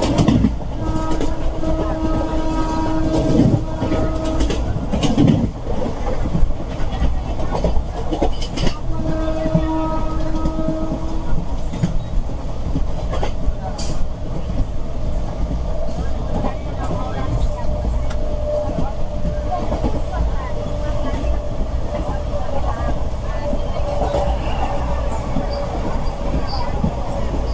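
Express train running at speed, heard from an open coach door: a steady rumble with wheels clacking over rail joints. A locomotive horn sounds two steady blasts, one about four seconds long at the start and a shorter one a few seconds later. Near the end an oncoming train passes close by on the next track.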